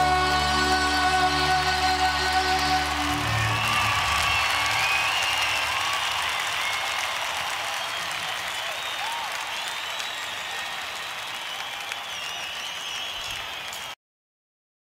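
A live band's final chord rings out and stops about three seconds in. Audience applause with whistling follows and slowly fades.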